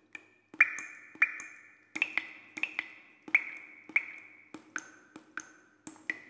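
Animated-title sound effects: bright pinging, drip-like notes, each opening with a sharp click and ringing briefly, a few a second. The notes step down in pitch near the end, over a faint steady low tone.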